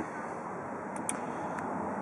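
Steady low background noise with a faint click or two about a second in.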